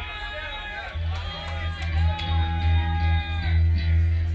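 Live funk-rock band playing: an electric guitar bends and holds notes over a steady, held low bass note, with a few sharp cymbal hits in the first couple of seconds.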